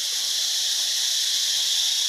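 A steady, high-pitched chorus of forest insects, an unbroken shrill drone with no other sound over it.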